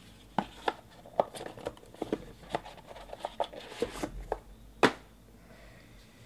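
Trading cards being handled and laid down on a stack by hand: a run of light, irregular clicks and taps, the sharpest one about five seconds in.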